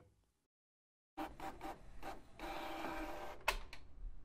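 Printer mechanism starting about a second in: a few short clicks, then a steady mechanical whir with several steady tones in it, broken near the end by a sharp, loud click and a second, weaker one.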